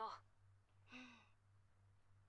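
A single short, soft laugh from a voice in the anime dialogue, a quick breathy chuckle falling in pitch, about a second in.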